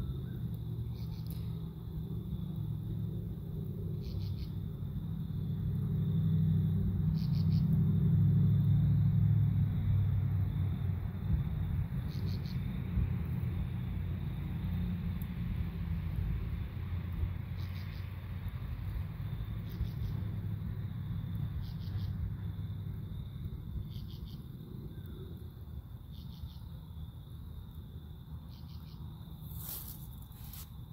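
Outdoor ambience with a low rumble that swells for several seconds and slowly fades. Over it are short, high insect chirps every two to four seconds above a faint steady high insect tone.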